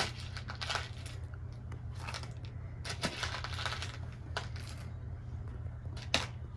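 Dry black beans rustling and rattling in a plastic tub as a child's hand digs and scoops through them, in short irregular bursts.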